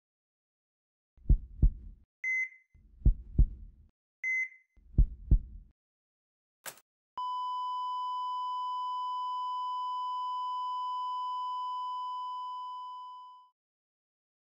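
Heart-monitor sound effect: three slow double heartbeats, each about two seconds apart, with two short high beeps between them. A sharp click follows, then a long steady flatline tone that fades out near the end.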